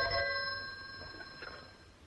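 Telephone bell ringing; the ring stops less than a second in and its tone fades away.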